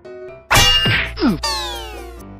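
A sudden loud metallic clang about half a second in that rings on, followed by a falling, sliding tone over the last half second: comic sound effects for a blow to the head.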